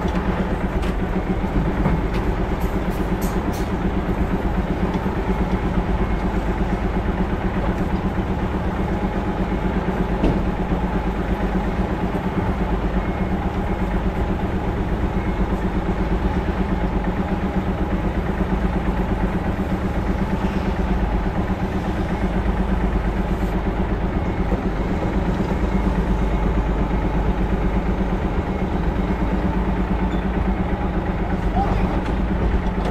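Hino Profia tractor unit's diesel engine running steadily at low revs as the semi-trailer is manoeuvred slowly.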